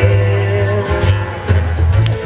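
Live acoustic band music with no singing: strummed acoustic guitar and accordion over sustained bass notes, with a sharp drum hit about one and a half seconds in.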